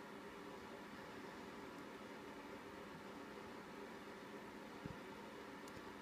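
Near silence: faint steady hiss with a low hum, and one faint tick near the end.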